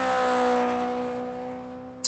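Small helicopter flying overhead: a steady pitched hum that is loudest about half a second in, then fades, its pitch falling slightly as it passes.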